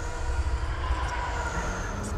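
Steady low rumble of industrial city ambience in film sound design, with faint sustained tones held above it.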